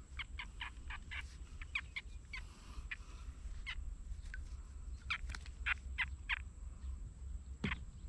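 Birds calling: a quick run of short, sharp calls, about five a second, then scattered calls, with another quick cluster about five seconds in. A steady low rumble runs underneath.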